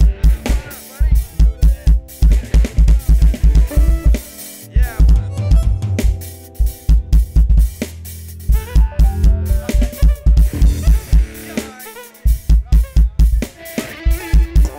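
Roland TD-30KV V-Drums electronic drum kit played fast through the PA: rapid runs of kick drum strokes with snare and cymbal hits, broken by a few short pauses, one about three quarters of the way through. Sustained pitched notes from accompanying instruments sound underneath.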